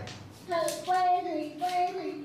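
A high, child-like voice singing a short tune of a few held notes, starting about half a second in.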